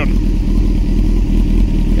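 Honda 900 motorcycle's inline-four engine idling steadily.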